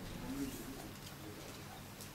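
Low room tone in a pause between words, with a steady low hum throughout and a brief, faint, low voice-like sound near the start.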